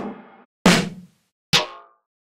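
Snare drum one-shot samples played back one at a time: two sharp hits a little under a second apart, each with a short ringing tail, after the tail of another at the very start.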